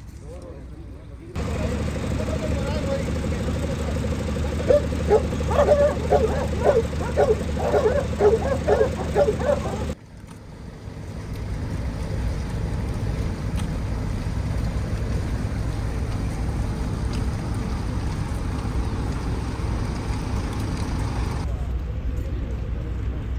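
Outdoor field sound of a steady low rumble. From about four seconds in, loud voices shout in quick, short calls one after another. After a sudden cut near the middle, only a steady rumble and hiss are left.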